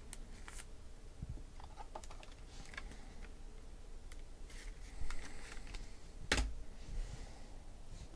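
Light clicks and taps of trading cards being handled on a tabletop, set down and squared into a stack. One sharper click comes a little past six seconds in.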